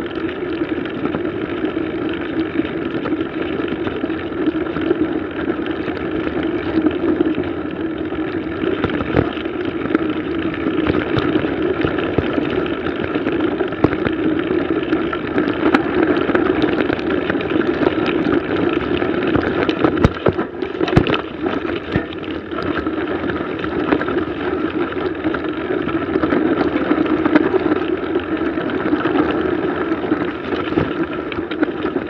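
Mountain bike rolling along a snowy dirt trail, heard from a bike- or rider-mounted camera: steady tyre and wind noise with scattered knocks and rattles from the bike, a few sharper knocks about twenty seconds in.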